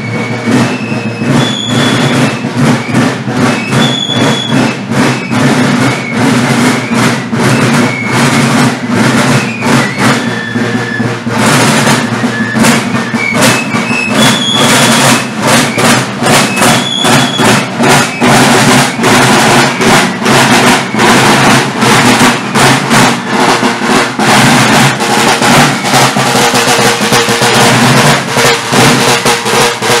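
A corps of marching field drums (large rope-tension side drums) beating a folk-march cadence in dense, rapid strokes.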